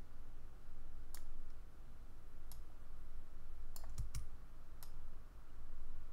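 A handful of separate, sharp clicks from a computer mouse and keyboard being worked, over a faint low background hum.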